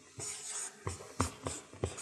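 Felt-tip marker writing on a paper flip-chart pad: a scratchy stroke in the first half, then a run of short sharp taps as the pen strikes and lifts from the paper.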